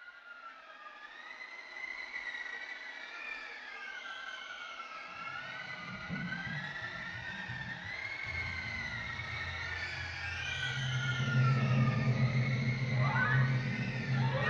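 Animated-film score for a gathering storm: several high, wavering tones sliding slowly up and down like wind wailing. From about five seconds in, low sustained notes enter beneath them and the whole grows steadily louder toward the end.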